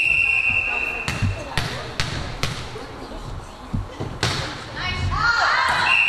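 Volleyball referee's whistle blown at the start, one steady high tone held about a second, authorizing the serve. It is followed by a series of sharp ball thuds ringing in the gym hall. Near the end, shouting voices and a second short whistle blast.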